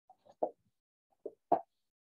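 A few short, soft taps or knocks with silence between them, each weak tap followed by a louder one about a quarter second later. The loudest comes about one and a half seconds in.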